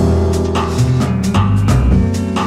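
Music: a steady drum-kit beat over a deep bass line.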